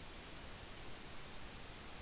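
Faint, steady hiss of microphone noise with no other sound in it.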